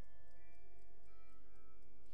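Loaded barbell in a bench-press rack clinking and ringing as the lifter grips and settles the bar: light metallic ticks, with several bell-like tones at different pitches that ring on and overlap.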